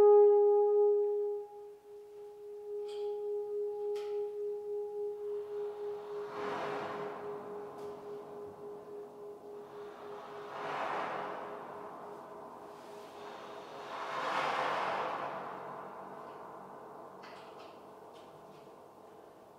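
French horn holding one note, loud for about a second and a half, then carried on by electronic processing as a fading, pulsing echo. Three rushing breath-like swells rise and fall at about six, eleven and fourteen seconds. The sound imitates a humpback whale call booming around a reverberant bay.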